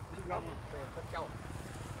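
Faint, distant voices speaking in short snatches over a low, steady hum.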